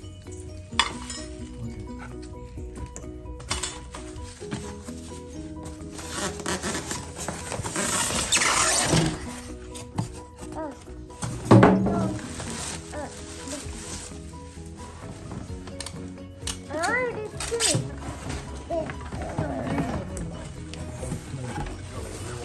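Background music over rustling of plastic wrap and cardboard as an air fryer is unpacked from its box, with a louder thump a little past the middle. A child's voice is heard briefly later on.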